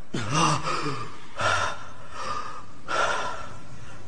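A voice panting hard: a voiced gasp, then three heavy breaths in and out about two-thirds of a second apart, the sound of a character out of breath.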